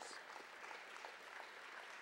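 Audience clapping, faint and steady.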